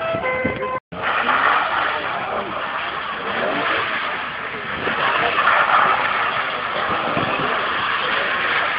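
A car's engine revving while it drifts, with tyres sliding on wet tarmac and a dense rushing noise throughout. A few short steady tones come first, and the sound cuts out for a moment about a second in.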